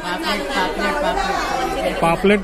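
People talking, with overlapping chatter of several voices.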